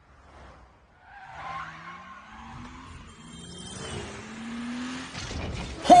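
A car engine accelerating, its pitch rising twice and growing steadily louder toward the end.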